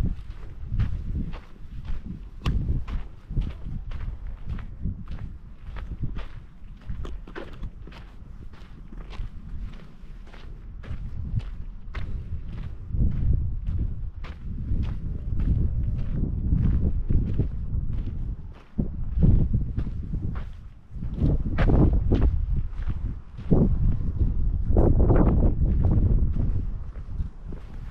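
Footsteps walking steadily on sandy desert ground and sandstone, about two steps a second, with a low rumble that grows louder over the second half.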